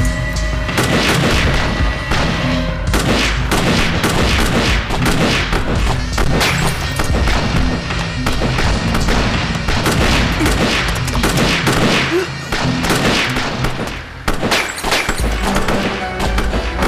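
Rapid, sustained handgun fire from several guns in a shootout, over a dramatic music score. The shots let up briefly near the end, then resume.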